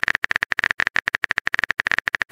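Phone keyboard typing sound effect: a fast, even stream of sharp clicks, about twenty a second, as a chat message is typed out.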